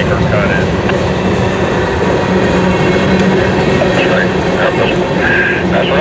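Loaded freight train of tank cars rolling past close by: a steady, loud rumble and clatter of steel wheels on the rails.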